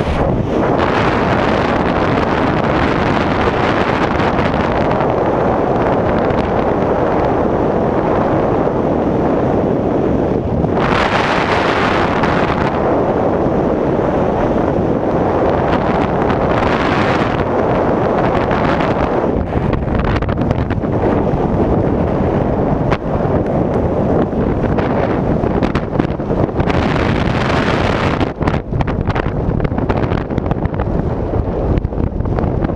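Air rushing past a skydiving camera's microphone during a tandem jump: a loud, steady wind noise, with stronger gusts about eleven seconds in, again around seventeen seconds, and near the end.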